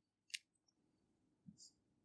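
Near silence broken by faint sounds of a marker on a whiteboard: a short sharp click about a third of a second in, then a brief faint scratch of the tip across the board in the middle.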